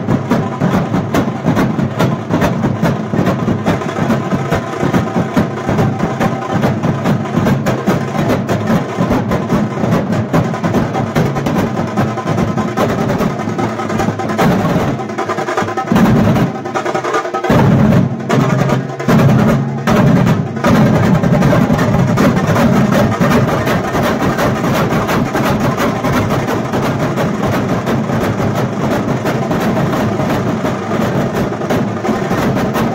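A large street drum troupe beating big white-headed drums with curved sticks in a fast, dense, continuous rhythm. In the middle it breaks into a few short stops and unison accents before the steady beat picks up again.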